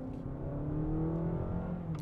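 Honda Accord e:HEV's 2.0-litre four-cylinder engine heard from inside the cabin, its note rising steadily under hard acceleration. Near the end the pitch drops, as the hybrid system's software mimics a stepped upshift.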